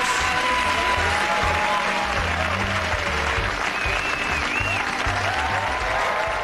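Studio audience applauding over the show's closing theme music, which has a steady beat.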